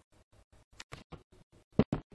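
A computer mouse clicking several times, with the two loudest clicks close together near the end, over a faint buzz that pulses about seven times a second.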